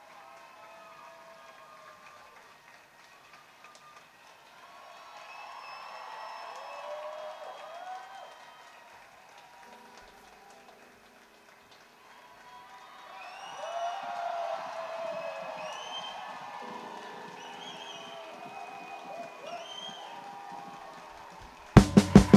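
Faint voices from the stage, heard through a musician's monitor mix, with a soft sustained keyboard chord coming in about halfway and changing a few seconds later. The full pit band comes in loudly with drums right at the end.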